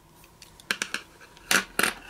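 Plastic ColourPop creme gel liner pencils clicking against each other and against a hard tabletop as they are handled and set down, with a couple of light clicks a little under a second in and two sharper knocks about a second and a half in.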